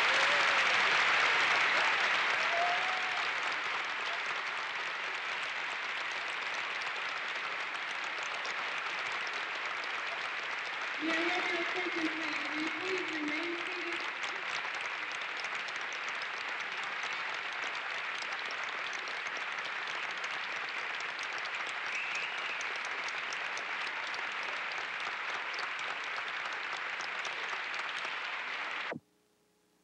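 Audience applauding for a long stretch, loudest at first and then steady, with a few voices calling out over it about eleven seconds in and again later.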